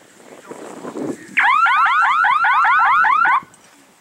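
Electronic signal of an F3B speed course: a loud warble of fast rising chirps, about six a second, that sounds for about two seconds and then cuts off. It marks the glider's crossing of the base line on the timed course.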